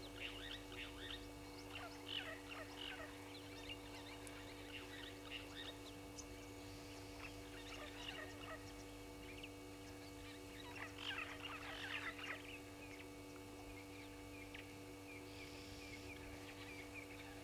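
Wild birds calling in a busy chorus of short, overlapping chirps, heaviest in the first few seconds and again about eleven to twelve seconds in, over a steady low electrical hum.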